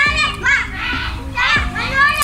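Children's high-pitched voices calling out in play in the background, several short calls, over faint background music.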